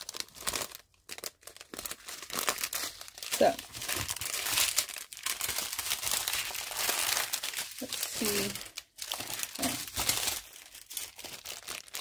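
Clear plastic bags of diamond-painting drills crinkling and rustling as they are handled and shuffled about, in an irregular, continuous stream.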